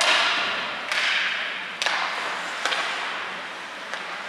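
Ice hockey play: skate blades scraping the ice in two hissing bursts, one at the start and one about a second in. Then come two sharp clacks of stick and puck, less than a second apart.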